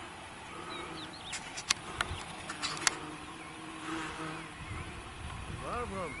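Faint chatter of a group of hikers, with several sharp clicks over a couple of seconds and a few short high chirps; a louder voice rises and falls near the end.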